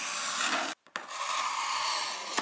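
A small box cutter slicing along the packing tape on a cardboard box's top seam, a steady scraping cut in two long strokes with a brief break just under a second in.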